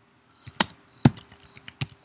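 Typing on a computer keyboard: a handful of separate keystrokes, three of them louder than the rest, about half a second apart.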